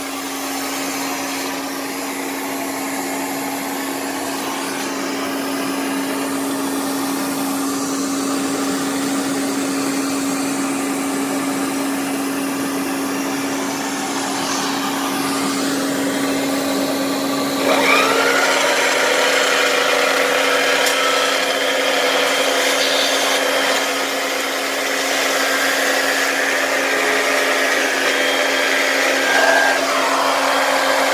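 1962 Electrolux Model C-A commercial canister vacuum running steadily, drawing air through its turbine-driven power nozzle. The owner says it sounds and runs beautifully. About 18 seconds in the sound suddenly gets louder and a higher whine joins in.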